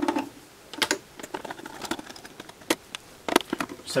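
A screwdriver working the screws of an HP 3400A voltmeter's metal case to free its cover: a string of sharp, irregularly spaced clicks and taps, about eight in all.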